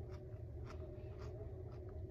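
A person chewing food with the mouth closed, a few faint soft clicks, over a steady low hum.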